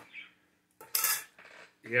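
Metal scraping and clinking at an opened tin can, its metal lid or a utensil worked against the rim: one sharp scrape about a second in, with a lighter rattle after it.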